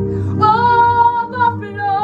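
A woman singing a gospel worship song over steady backing music. She holds long notes, with one short break in the middle.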